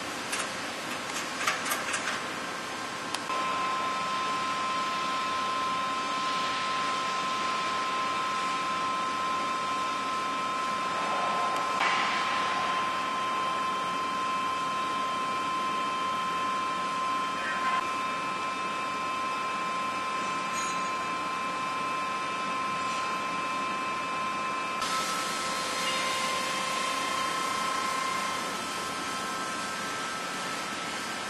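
Steady machine running in a shop: a hum with a high, steady multi-tone whine that comes in about three seconds in, over a constant hiss, with a few light clicks near the start.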